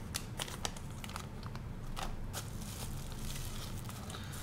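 Thin plastic parts bags and a bubble-wrap pouch crinkling as they are handled, with irregular small crackles and clicks throughout.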